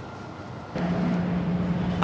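Outdoor street background noise with a steady low hum, possibly passing traffic; it gets louder about three quarters of a second in.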